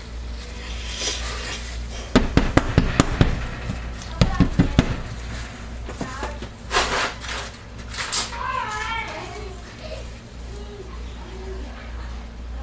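A hard plastic soap loaf mold knocking and clattering against a glass-top stove in a quick run of knocks for a few seconds as it is handled and wiped down, followed by a brief paper-towel rustle. A child's voice is faintly heard in the background near the end.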